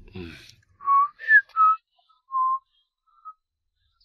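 A man whistling a few short, clear notes, one of them sliding upward, just after a brief breathy sound.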